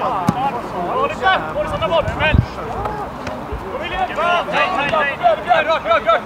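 Football players shouting to one another across the pitch, with the thud of a football being kicked just after the start and another low thump about two seconds in.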